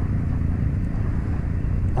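Steady low rumble of riding a bicycle along a paved bike lane: wind on the microphone and the rolling of the bike, with no distinct shots or other events standing out.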